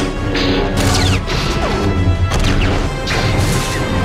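Lightsaber sound effects, blades swinging and clashing several times in quick succession, over a music score with a heavy bass.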